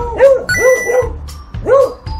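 Beagle barking, about four short arching barks with the last near the end, over music with bright chiming tones.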